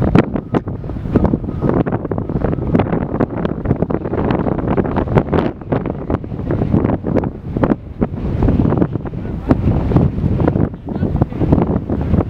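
Wind buffeting the phone's microphone: a loud, gusty, irregular rumble.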